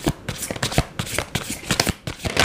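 A deck of tarot cards being shuffled by hand: a quick, irregular run of sharp card snaps and riffles.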